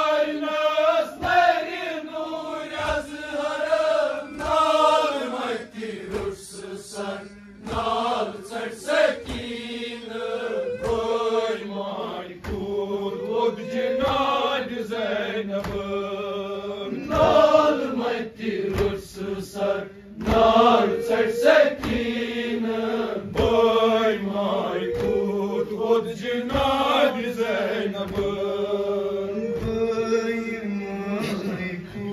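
Male voices chanting a Kashmiri nauha, a lament sung by a reciter through a microphone with other men joining in. Under the singing are steady thumps of chest-beating (matam), about one a second, keeping time.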